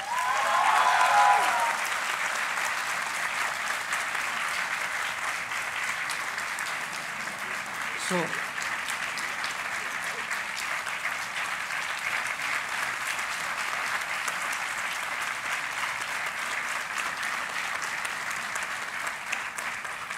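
Large indoor audience applauding steadily for a gold medal presentation. A voice calls out briefly at the start, and another short falling call comes about eight seconds in.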